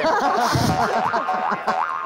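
Cartoonish springy 'boing' comedy sound effect, a run of quick rising pitch glides repeating several times, laid over studio laughter.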